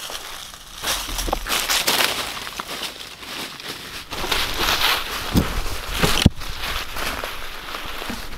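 Footsteps crunching through dry fallen leaves and twigs in an uneven walking rhythm, with a sharp crack about six seconds in.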